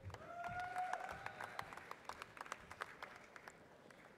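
Scattered audience applause, many separate claps thinning out over the few seconds, with one voice in the crowd holding a cheer through the first second or so.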